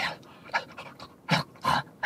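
A man panting like an excited dog: short breathy pants, about one every half second.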